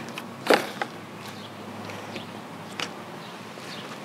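Handling noise from golf pushcart parts: one sharp knock about half a second in and a couple of fainter clicks, over a steady outdoor background hiss.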